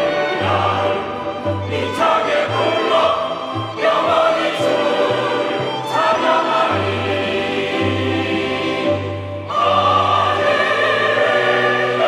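Mixed church choir singing the chorus of a Korean hymn ("Hallelujah, sing out with strength, I will praise the Lord forever") with instrumental accompaniment. The voices hold long notes over a bass line that moves every half second to a second.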